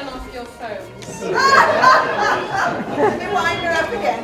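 A woman's voice addressing an audience in a large hall, louder from about a second in, with audience chatter.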